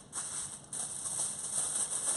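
Aluminium foil crinkling as it is folded down by hand over fish on a baking tray, with a steady high hiss behind it.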